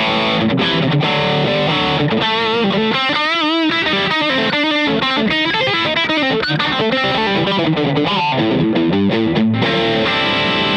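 PRS SC245 electric guitar played through the Carl Martin Quattro's overdrive: a distorted lead line, with bent notes given a wide vibrato about three to four seconds in.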